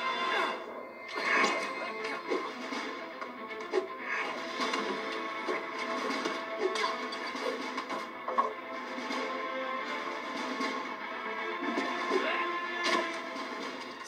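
Film soundtrack music playing under an action scene, with a few sharp hits.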